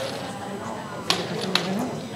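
Indistinct talk of people in a room, with two sharp clicks about half a second apart near the middle.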